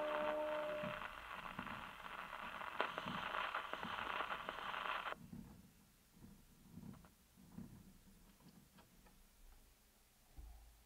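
The final note of a 78 rpm record on an acoustic Columbia Grafonola fades out about a second in. The needle then rides the run-out groove, giving surface hiss with a soft swish repeating about once a revolution. The hiss cuts off suddenly about halfway through as the tone arm is lifted from the record, leaving only a few faint knocks as the arm is handled.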